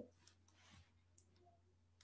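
Near silence: quiet room tone with a low hum and a few faint, short clicks.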